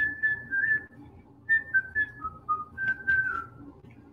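A man whistling a short tune of clear held notes that step up and down in pitch, with a brief pause about a second in.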